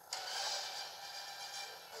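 Movie-trailer soundtrack, music with sound effects, coming from a portable DVD player's small speaker. It comes in suddenly just after the start and holds steady, with a hissy brightness.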